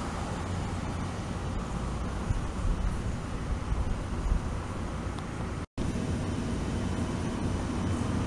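Steady low outdoor rumble, an even background noise with no distinct events, broken by a split second of dead silence a little before six seconds in.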